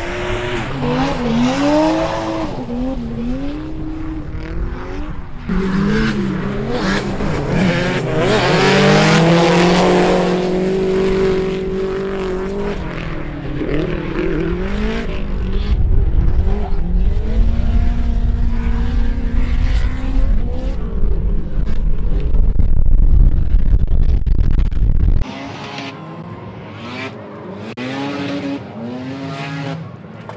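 Drift cars' engines revving up and down again and again as they slide through the corners, loudest a third of the way in. Heavy wind rumbles on the microphone and drops away suddenly near the end.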